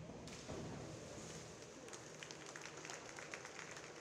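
A diver entering the pool head-first off a springboard: a splash about a quarter-second in, with water washing after it. Scattered hand claps from teammates follow from about halfway on.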